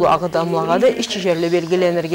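A woman's voice speaking without pause.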